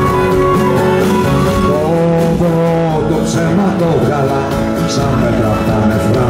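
A live band playing an instrumental passage between verses: acoustic guitar strumming under a held melody line that slides between notes, over low bass notes.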